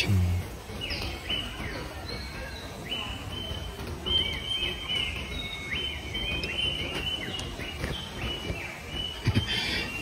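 Birds calling in the background: a string of short, high chirps, many held briefly and then dropping in pitch, busiest in the middle, over low steady outdoor background noise.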